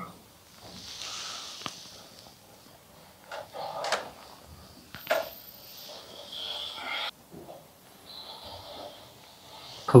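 Quiet, intermittent wooden creaks and short knocks in the timber interior of a windmill, where the wooden gearing and steep wooden stairs are the sources at hand.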